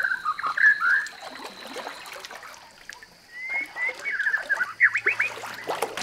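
Birds calling in quick series of short whistled chirps, with light splashing and trickling water from a raft being poled.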